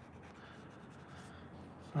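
Faint scratching of a white coloured pencil on paper as highlights are added over marker colouring, a soft, even rubbing with light short strokes.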